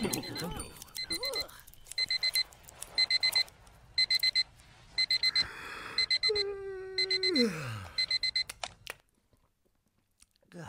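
Digital alarm clock beeping in quick groups of four, about one group a second, stopping near the end. About six seconds in, a long low tone holds and then slides down in pitch under the beeps.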